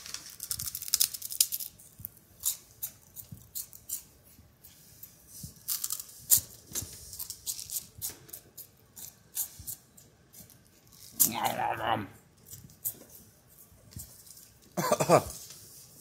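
Close-up crunching of a crisp, Funyuns-style onion-ring snack being bitten and chewed: a rapid, irregular run of sharp crackles through the first several seconds. A short vocal sound comes about eleven seconds in and another near the end.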